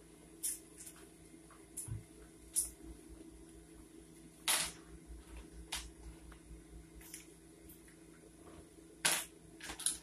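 Handling noise: about eight short clicks and rustles spread irregularly over a faint steady hum, the loudest one about halfway through.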